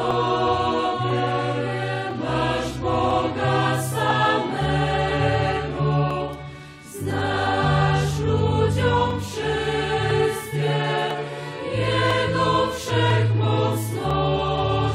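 A choir of young women singing a hymn from sheet music, over sustained low notes that fit a church organ. The singing breaks off briefly about halfway through and then goes on.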